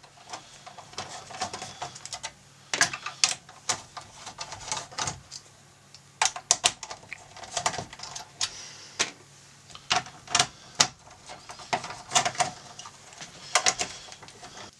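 Small 7/32-inch screws being backed out of a circuit board with a socket driver and handled: irregular light clicks and taps, coming in little clusters every second or two.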